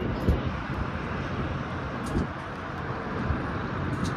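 Steady hum of city road traffic heard from above, with a few brief low rumbles of wind on the microphone.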